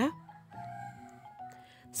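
A rooster crowing faintly: one drawn-out call made of a few held pitches.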